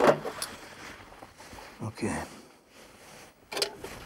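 Metal tongs gripping a hot aluminium drinks can and lifting it off the hot plate: a click at the start and a few brief clinks and rattles near the end.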